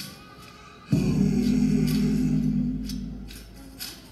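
A song with singing: after a brief lull, a long held note with a low drone under it starts about a second in and fades toward the end.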